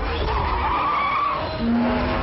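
Car tyres squealing through a skidding turn, one squeal rising and falling for about a second, over music with a steady low bass.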